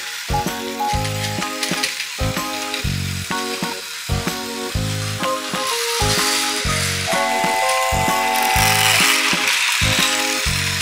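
Background music with a steady beat over the rattling whir of a battery-powered Plarail toy train's motor and plastic gears running on plastic track. The rattle grows louder past the middle.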